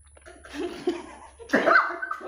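A person coughs through a mouthful of fried egg, one loud splutter about one and a half seconds in.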